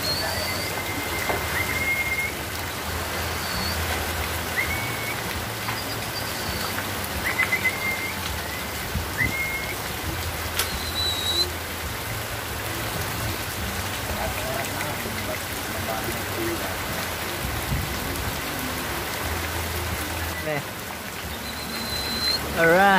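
Steady rain falling on the loft roofs and foliage, with water running off the roof edge. Short rising chirps come every second or two through the first half.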